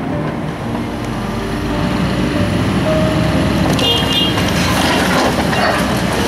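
Demolition excavator running, its diesel engine and hydraulic grab working as it tears into a brick building, with a brief high metallic screech about four seconds in and crashing rubble noise building toward the end.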